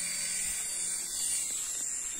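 Toy helicopter's small electric motor and rotors running in a steady, high buzzing whine as it hovers low.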